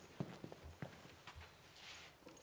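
Faint footsteps of a person walking across the floor, a series of separate light steps a few tenths of a second apart.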